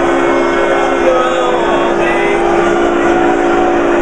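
Barbershop quartet of three men and a woman on baritone, holding one long, steady chord in close harmony, with lobby crowd chatter beneath.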